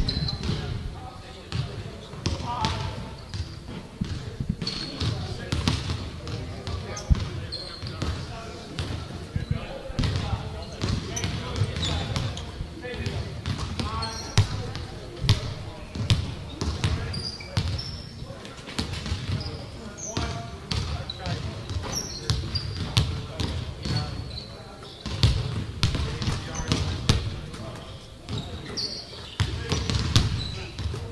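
Basketballs bouncing on a hardwood gym floor, irregular knocks and thuds echoing in a large gym during shooting practice, with short high sneaker squeaks.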